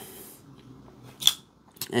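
CJRB Scoria folding knife being worked by hand: one sharp metallic snap of the blade and lock about a second in, and a couple of lighter clicks near the end.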